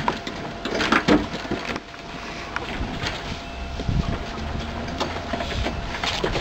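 Sharp knocks and scraping from cemetery workers handling objects inside an open tomb vault during a burial, the loudest cluster about a second in and a few more knocks later.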